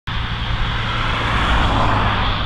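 Road traffic: a pickup truck driving away along the road, its tyre noise swelling toward the end over a steady low engine rumble.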